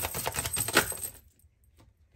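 A deck of oracle cards being shuffled by hand: a quick run of card-on-card flicks for about a second, then it stops, leaving only a couple of faint clicks.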